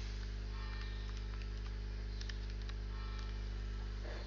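Steady electrical mains hum with its stack of overtones, picked up by the recording setup, with a few faint ticks over it.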